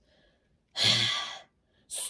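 A person sighs once, a breathy exhale lasting a little over half a second.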